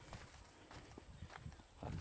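Faint footsteps of a person walking over dry leaf litter and grass, a few soft scattered crunches and knocks.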